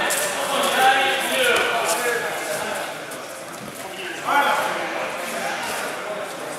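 Men's voices talking and calling out in a large hall, louder again about four seconds in.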